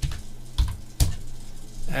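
Computer keyboard keys struck three times, short knocks about half a second apart, as a number is typed and Enter is pressed.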